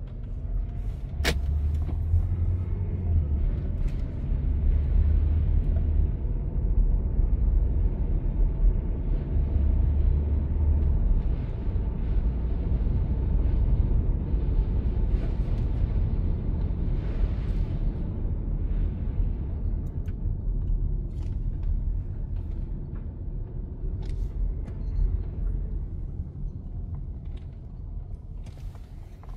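Cabin noise inside a 2014 Hyundai Sonata Hybrid driving slowly on wet pavement: a steady low rumble of tyres and drivetrain, with a sharp click about a second in.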